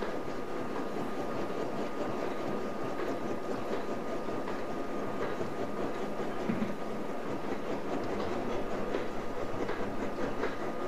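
Gear hobbing machine cutting gear teeth under a flood of cutting oil: a steady mechanical running noise with a faint clatter, which grows more uneven near the end, and a thin steady tone.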